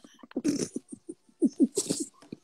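A man laughing in a few short, broken bursts.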